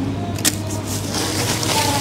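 Paper food wrapper crinkling and rustling in hand, with a sharp crackle about half a second in, over a steady low background hum.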